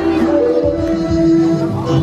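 A live band playing a song: electric guitar with held notes over a steady drum beat, with no singing in this short instrumental stretch.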